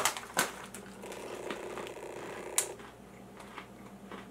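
Plastic snack bag crinkling and rustling as it is held up and turned in the hand, with scattered crackles and a sharper crackle about two and a half seconds in.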